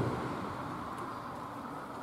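Road traffic crossing the concrete road bridge overhead, heard from underneath the deck as a steady rumble that slowly fades.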